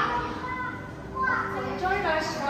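Children's voices and visitors' chatter, high-pitched calls and talk that no single speaker dominates.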